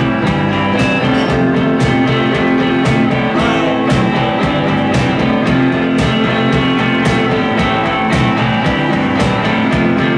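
Live rock band playing a song's instrumental opening: electric guitar over a steady, driving drum beat, with no vocals yet.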